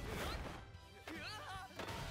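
The show's soundtrack: a crashing impact sound effect over background music, then a character's short high exclamation about a second in.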